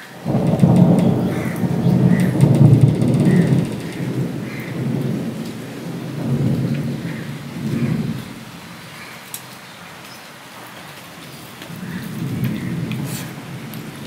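A loud low rumble that swells up suddenly and rolls on for about four seconds, then comes back in weaker swells, over faint squishing of rice being mixed by hand on a steel plate.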